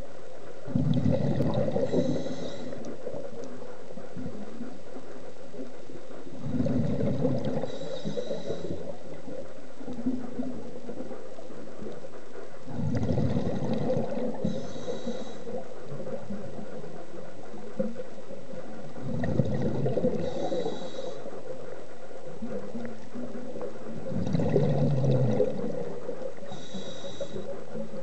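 Scuba diver breathing underwater through a regulator: each breath is a low bubbling rumble that ends in a brief higher hiss, repeating about every six seconds, five times.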